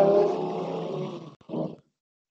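A person's voice over a video call: a drawn-out, held vowel-like sound that fades over about a second and a half, then a brief second sound, after which the line cuts to silence.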